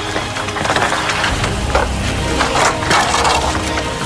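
Bamboo poles knocking and clattering against each other as they are handled and pulled down from a pile, in a string of irregular knocks.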